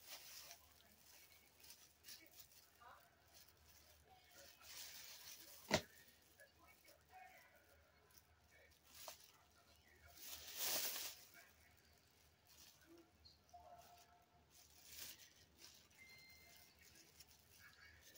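Near silence with faint handling noises: a single sharp click about six seconds in and a short rustle near the eleven-second mark.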